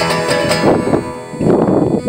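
Nylon-string classical guitar being strummed and plucked together with a harmonica held in a neck rack, the harmonica's sustained chords sounding over the guitar. The playing thins out about a second in, then fills again toward the end.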